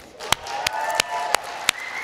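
Audience applause, with one person's hand claps close to the microphone standing out sharply at a steady pace of about three claps a second.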